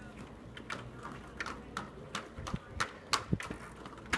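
Children's inline skates and a small bicycle rolling over a paved path: a run of irregular clicks and clacks, a few a second.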